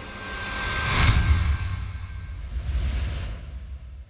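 Logo intro sound effect: a swell that builds to a deep hit about a second in, then a swoosh that cuts off abruptly just past three seconds and fades away.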